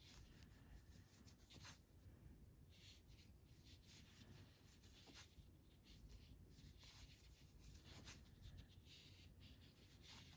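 Near silence, with the faint rubbing of yarn and soft, irregular ticks of a crochet hook as single crochet stitches are worked.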